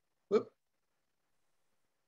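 A single clipped voice sound, a fraction of a second long, about a third of a second in, then dead silence as the video-call audio cuts out.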